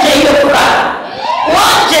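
A woman preacher shouting loudly into a microphone in two long cries, with a crowd of congregation voices.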